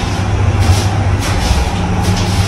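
Fujitec passenger lift car travelling downward: a steady low hum of the moving car, with some faint irregular rustle over it.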